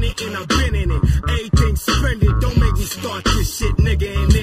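Hip hop track: rapping over a beat with deep bass.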